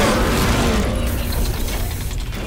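Logo-intro sound effect: a loud, dense, mechanical-sounding glitchy noise that slowly fades.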